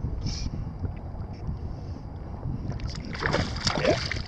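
Small waves lapping close to the microphone, with wind noise. From about three seconds in, a louder splashing burst as a hooked smallmouth bass thrashes at the surface.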